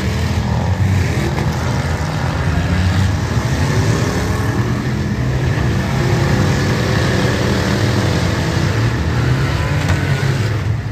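Engines of several demolition derby cars running at once, with revs rising and falling.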